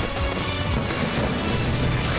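Loud theme music for the show's logo, with sustained layered chords that follow a sudden crash just before it.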